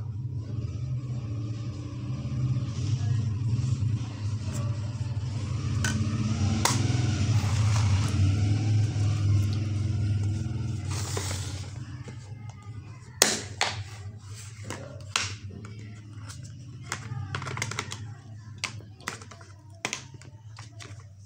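A steady low hum, loudest in the first half, then a string of sharp clicks and knocks as plastic cosmetic jars and a plastic box are handled on a stone counter.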